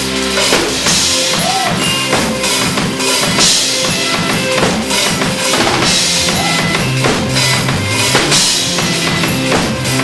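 A live rock band playing an instrumental passage: the drum kit's bass drum and snare drive the beat under electric guitar, bass and other sustained instruments.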